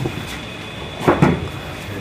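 Hand rubbing marker writing off a whiteboard, with one short creaky squeak falling in pitch about a second in.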